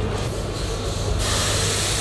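A hiss of escaping air or gas, about a second long, that starts suddenly past the middle and stops sharply, over a steady low hum.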